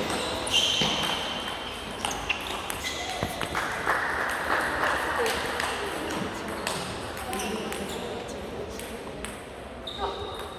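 Large sports hall between table tennis points: background voices with scattered sharp clicks of table tennis balls striking tables and bats, and a brief ringing tone about half a second in.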